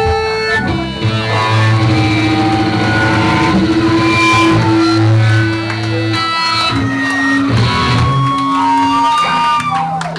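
Electric guitar and bass played loud through amplifiers on a club stage, with long held notes that change every few seconds rather than a full-band song.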